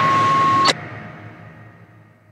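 The end of a loud, heavy rock song: a single held high note carries on over the band's last noise, then everything cuts off suddenly with a click under a second in, leaving a short ring that fades away to silence.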